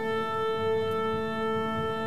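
An orchestra tuning: a woodwind holds a steady A, and other instruments sound the same A and its lower octave in unison.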